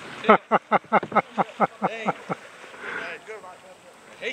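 People laughing hard in a quick run of short 'ha-ha' bursts, with a second, higher voice calling out in the middle.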